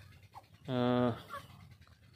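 A man's voice: one short held 'aah', a hesitation sound of about half a second, low and steady in pitch, a little under halfway through.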